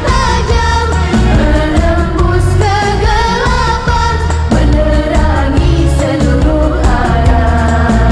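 A group of girls singing an Islamic devotional song through a microphone and PA, over accompanying music with a steady low beat.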